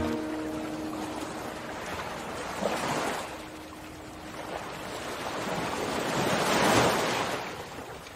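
Ocean waves washing in, two swells rising and falling about four seconds apart, while the last guitar chord of the song fades out in the first seconds.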